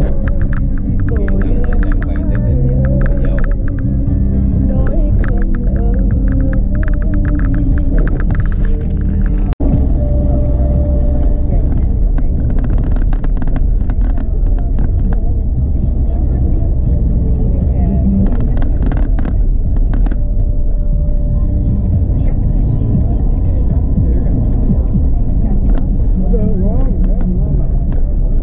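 Car on the road with a low, steady engine and tyre rumble, and music with a voice playing over it; the sound cuts out for an instant about nine and a half seconds in.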